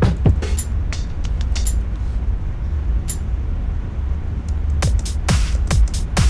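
Simple electronic drum loop playing back from an FL Studio channel rack: four-on-the-floor kick, claps, hi-hats, snare and cowbell over a steady deep low end, the hits coming several times a second.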